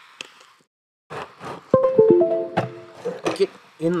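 A short jingle of a few plucked-sounding notes, starting one after another about two seconds in and ringing on briefly, amid muttered speech. The sound drops out completely for about half a second shortly before the notes.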